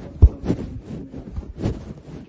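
Muffled, dull thumps and rubbing on the microphone, about four knocks with the loudest a quarter second in. This is handling noise of a phone being carried with its lens covered.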